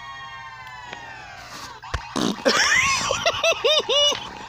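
A held steady tone that sags slightly in pitch, then a click, then a person's voice making goofy, nonsense character noises, the pitch swooping up and down several times a second.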